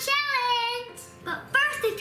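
A child singing a long, drawn-out note that slides in pitch for about a second, followed by more child's voice near the end.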